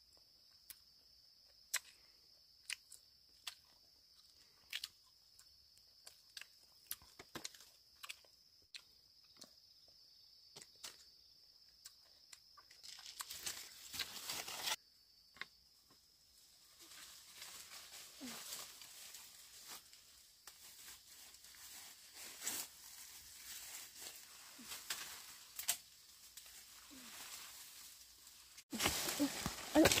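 A steady high-pitched insect drone with scattered sharp clicks, stopping suddenly about halfway. Then leaves and twigs rustle and crackle as fruit-tree branches are pulled down with a long stick, with a louder burst of rustling near the end.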